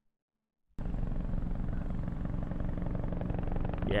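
Opening of a music video soundtrack: near silence, then about three-quarters of a second in a steady low rumbling drone starts suddenly and holds.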